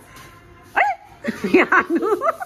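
High-pitched, yapping, bark-like calls: one short yap about three-quarters of a second in, then a quick run of them in the second half.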